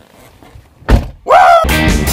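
A Chevy truck's driver door pulled shut with one heavy thunk about a second in. Rock music with guitar starts just after and carries on.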